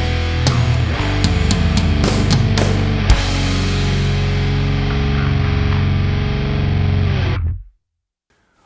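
Heavy metal band playing: distorted electric guitar through a Revv Generator MkIII amp into a Revv 4x12 cabinet loaded with a blend of Celestion G12 EVH and Hempback speakers, with drums and bass guitar. Drum hits through the first few seconds, then the band holds a ringing chord that stops abruptly near the end.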